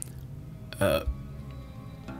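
A man's single short hesitation sound, "euh", falling in pitch, about a second in, over faint background music.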